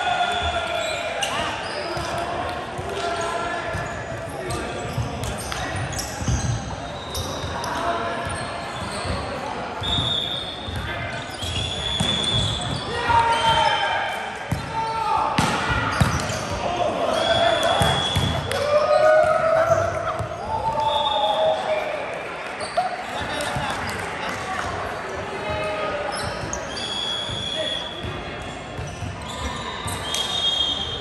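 Indoor volleyball play in a large echoing hall: players' voices calling out, the ball being served and struck, and short sneaker squeaks on the hardwood court.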